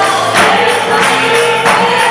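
Worship music: a group of voices singing together, with a steady percussive beat.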